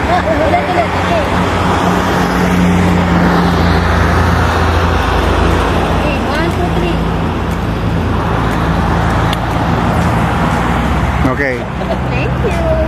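Road traffic noise with a motor vehicle's engine running steadily close by, a continuous low hum; faint voices near the start and near the end.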